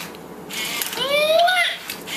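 Elmo Live animatronic toy, its fur removed, with its gear motors whirring as it moves. About a second in, its recorded high voice gives one call that rises and then falls.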